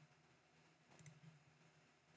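Near silence with a faint low room hum, and a faint computer-mouse click about a second in.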